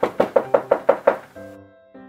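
A fast run of about eight knocks on a door, about six a second, stopping a little over a second in, over light background music.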